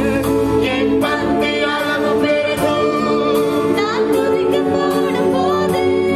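A live worship song: a woman singing into a microphone over electronic keyboard accompaniment, with the sound running steadily.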